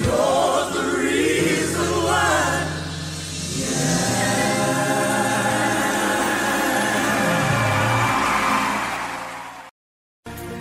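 Gospel choir and band closing a song: sung vocal runs at first, then a long held final chord that fades and cuts off just before the end.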